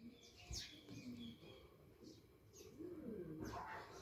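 Very quiet: faint bird calls in the background, including a low, wavering pigeon-like cooing in the second half, while a chisel-tip marker is drawn across paper.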